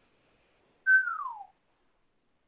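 A single clear tone, about half a second long, that holds briefly and then slides down in pitch.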